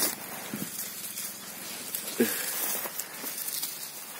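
Dry, fallen pine needles and leaves rustling and crackling underfoot as someone moves among the cardamom stalks: a soft, continuous crunchy hiss.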